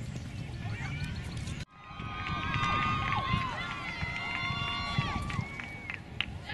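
Open-air background chatter, then after a sudden cut about two seconds in, several voices hold long overlapping calls that trail off downward.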